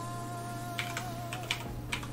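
Computer keyboard being typed on: a quick run of about five keystrokes in the second half.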